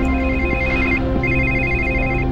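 A phone ringing: a high electronic warbling ring in two bursts of about a second each, over steady background music.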